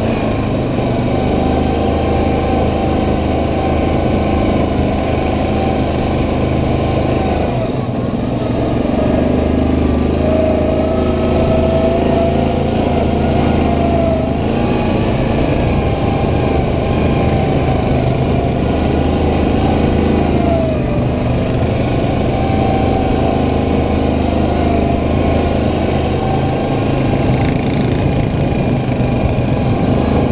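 Yamaha Kodiak 700 ATV's single-cylinder engine running under way on a dirt trail: a steady drone whose pitch rises and falls a few times with the throttle.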